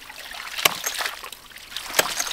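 A 1-inch hydraulic ram pump cycling: two sharp strikes about 1.3 s apart as the waste valve slams shut, with water splashing steadily in between. The air cushion in the pressure tank is nearly gone through a cracked cap, so the water hammer is starting to hit hard.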